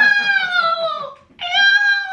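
A woman squealing a drawn-out, high-pitched "eww" twice, each cry about a second long and falling in pitch: a laughing show of disgust.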